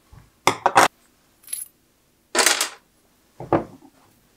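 Steel blade and metal parts of a hollow-handle survival knife being set down on a hard tabletop: four quick metallic clinks and clatters, the loudest about half a second and two and a half seconds in, a faint ringing one between them and the last near the end.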